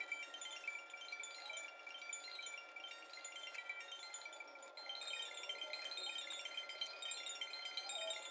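Quiet background music made of many short, high notes.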